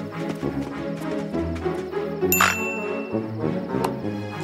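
Cartoon background music with a single bright, bell-like ding a little past halfway that rings on briefly.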